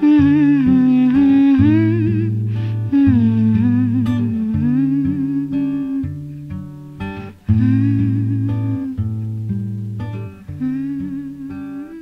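Acoustic guitar accompaniment under a woman's wordless vocal line, long held notes with vibrato in phrases a few seconds apart.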